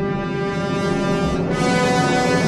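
Opera orchestra holding sustained low chords in a slow swell, with a change of chord about one and a half seconds in.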